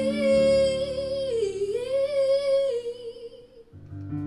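A woman's singing voice holds one long note with vibrato over sustained keyboard chords, the pitch dipping and coming back up about halfway through. Voice and keyboard both stop shortly before the end.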